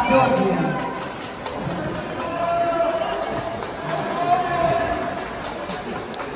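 Music playing in a large sports hall, mixed with voices and chatter.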